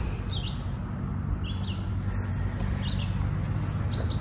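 A songbird calling: short high chirps repeated about once a second, over a steady low background rumble.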